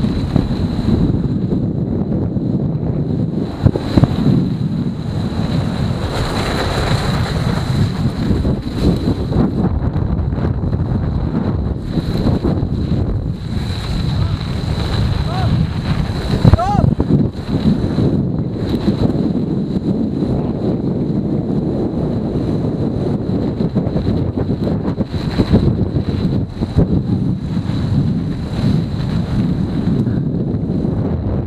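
Wind buffeting a helmet-mounted camera's microphone as a downhill mountain bike descends a snow course at around 40 km/h, with the bike and tyres rumbling over the snow underneath. A short rising whistle-like sound comes in about halfway through.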